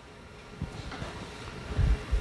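Footsteps on a lecture-hall floor: a few low thuds, the loudest near the end, over a faint steady hum in the room.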